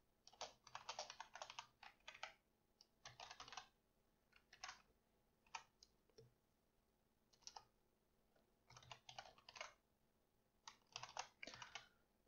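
Faint typing on a computer keyboard: quick runs of keystrokes with short pauses between them, plus a few single key presses.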